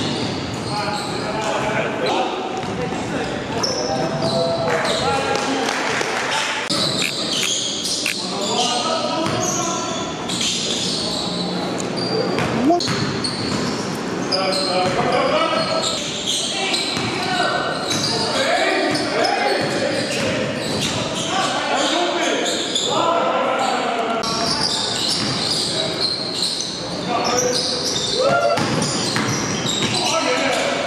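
Basketball game sounds in an echoing gym: a basketball bouncing on the court floor amid indistinct shouts and calls from the players.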